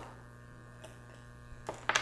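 Faint steady electrical hum, with one small tick about halfway through.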